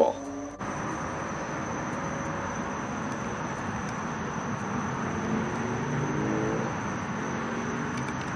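Steady outdoor background noise: an even rushing sound with a thin, high, unchanging whine above it, swelling slightly about six seconds in.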